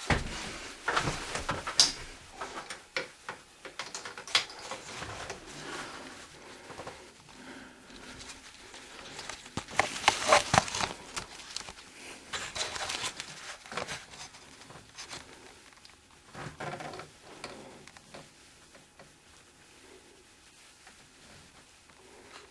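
Irregular clicks, knocks and rustling from handling a handheld inspection camera and its probe cable close to the recording microphone, with a louder cluster of clatter about ten seconds in, fading to faint room sound near the end.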